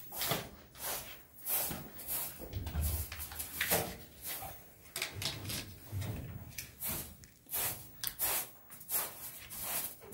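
Short hand broom sweeping a floor in irregular brushing strokes, about one or two a second.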